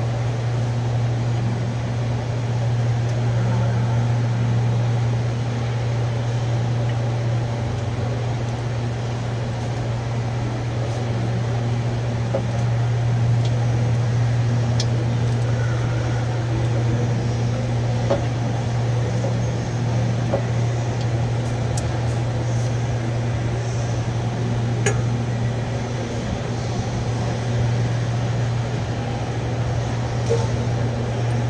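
Engine oil pouring in a steady stream from the open drain plug hole into a drain pan, over a loud, steady low hum, with a few faint ticks.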